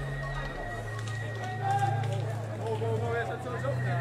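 Indoor swimming-hall ambience: distant, indistinct voices over a steady low hum, with a faint steady high tone.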